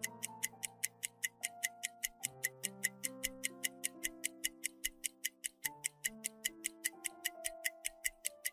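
Countdown timer sound effect: quick, evenly spaced clock-like ticks, several a second, over soft background music of slowly changing sustained chords.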